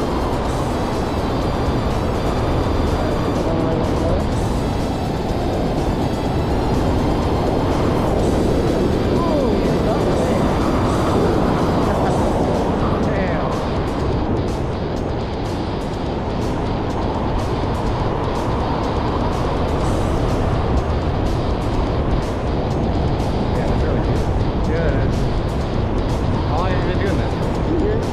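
Steady wind rushing over the microphone of a camera held out in the air under an open parachute canopy.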